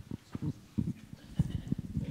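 Handling noise from a microphone: a run of irregular, low thumps and knocks, close and fairly loud.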